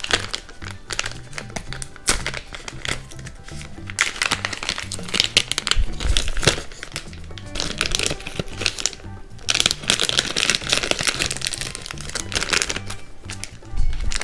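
A plastic blind-bag toy packet crinkling and crackling in irregular bursts as hands handle it and open it, over background music.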